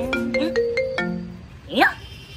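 Mobile phone ringtone: a short melody of steady electronic notes, followed near the end by a quick rising sweep.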